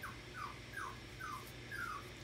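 Seven-week-old puppy whimpering: a run of five short, high whines, each falling in pitch, about two or three a second.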